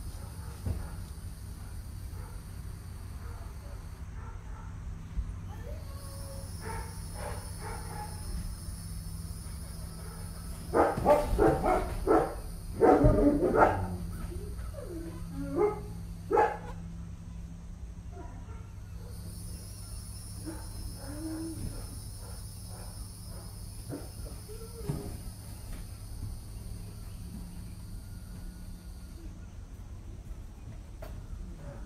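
A dog barking in a quick run of barks near the middle, with a couple more shortly after. Under it are a steady low hum and a high insect drone that cuts out twice.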